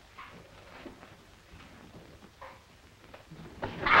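Faint soft sounds over quiet film-soundtrack hiss, then near the end a sudden loud yelp from a man jolted by an electric shock from a trick whip.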